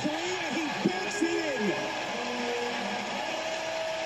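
Televised basketball broadcast heard through a TV speaker: a commentator speaking over a steady arena crowd noise.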